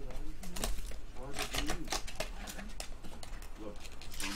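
Indistinct talking with clicks and rustles of trading cards and their cardboard pack being handled and slid open.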